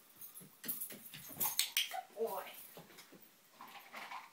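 A dog's claws clicking and scrabbling on a hardwood floor with rattling clicks as it goes for a keyring, then a short high dog whimper about two seconds in.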